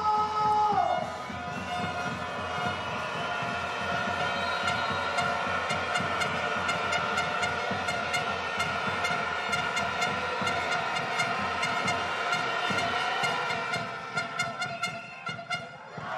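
Music played over the arena's sound system with crowd noise beneath, held steady and then dropping away near the end, where a few sharp knocks are heard.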